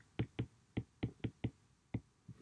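Stylus tip tapping on a tablet's glass screen while handwriting, about eight light, sharp taps spread unevenly over two seconds.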